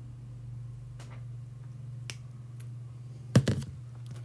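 A few faint clicks of small metal jewelry parts and pliers being handled, then a loud, sharp snap-like click a little over three seconds in. A steady low hum runs underneath.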